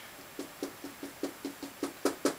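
Dry-erase marker tapping dots onto a whiteboard, a run of quick evenly spaced taps at about five a second starting near the beginning.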